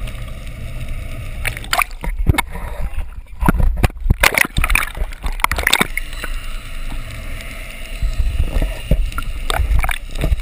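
Water sloshing and gurgling around a GoPro in its underwater housing, heard muffled over a steady low rumble, with a run of sharp knocks and clicks about two to six seconds in.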